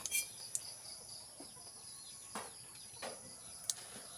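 Faint steady high-pitched chirring of insects such as crickets, with a few soft knocks scattered through.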